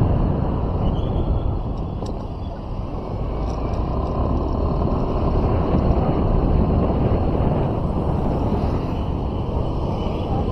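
Steady low rumble of wind on the microphone and road noise from a vehicle driving along a paved street.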